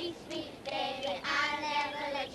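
Young girls' voices singing a playground handclapping chant together.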